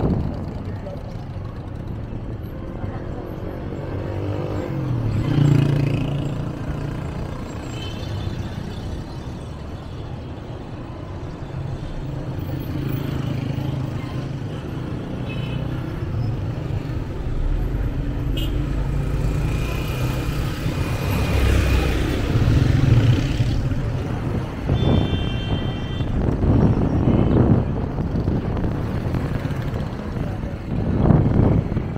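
City street traffic heard from a moving vehicle: a steady low engine and road rumble, with other vehicles swelling past twice. A short high-pitched tone sounds about five seconds before the end.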